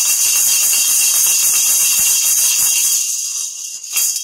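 Pair of plastic toy maracas shaken rapidly and continuously, giving a steady, dense, high-pitched rattle that eases slightly near the end.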